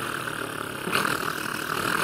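A steady rushing, hissing noise with little bass, growing brighter about a second in.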